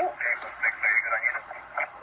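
Police radio chatter: a short, tinny, unintelligible voice transmission lasting most of the two seconds.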